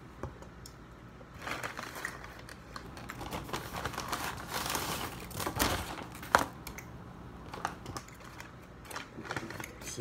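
Paper takeout bag rustling and crinkling as it is rummaged through and a wrapped item is pulled out, heaviest in the middle, with one sharp knock about six seconds in.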